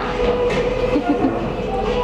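Busy café ambience: indistinct background voices and clatter over a steady low hum.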